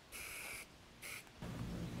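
Upside-down aerosol marking-paint can spraying onto the ground in two short hisses, the second briefly, to mark a footing centre.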